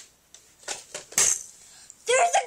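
A few light clicks and knocks from toys being handled and set down, the loudest just over a second in.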